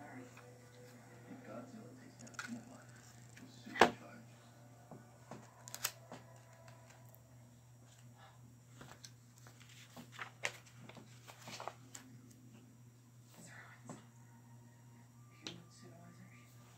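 Plastic LEGO model and bricks being handled on a table: scattered clicks and knocks of plastic on plastic and on the tabletop, one sharp knock about four seconds in, with light paper handling of the instruction booklet.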